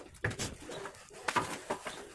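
Irregular scrapes and light knocks from a straightedge being worked across freshly plastered ceiling render.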